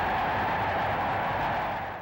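Old 1930s newsreel soundtrack, a dense, steady, hissy mix with no clear tune, fading out near the end.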